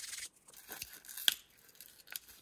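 Crinkling and tearing of a paper cleaning-wipe sachet being handled and opened, in short crackly bursts with one sharp tick a little past a second in.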